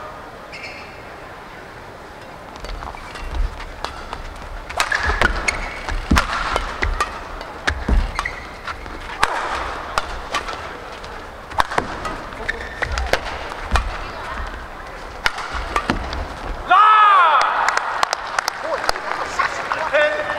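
A badminton doubles rally in an arena: rackets hitting the shuttlecock, shoes squeaking and feet thudding on the court. At about three quarters of the way through, the rally ends and the crowd gives a loud vocal reaction.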